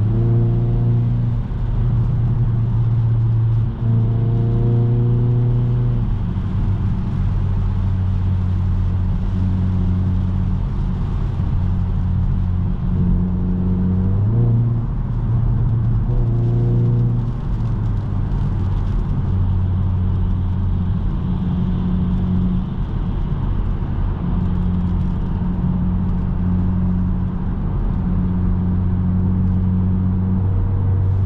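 Hyundai i30 N's 2.0-litre turbocharged four-cylinder heard from inside the cabin at steady motorway speed: a low, even drone over tyre noise on a wet road. The engine note briefly shifts and rises a few times, about 4 seconds in and again around the middle.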